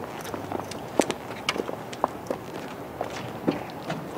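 Footsteps of two people walking on a paved surface: irregular steps a few times a second, the loudest about a second in.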